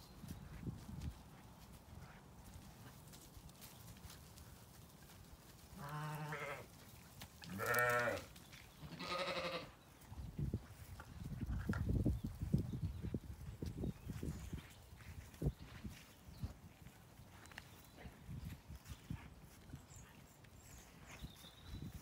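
Zwartbles ewes bleating three times in quick succession, about six to ten seconds in, followed by low irregular rustling and thumping.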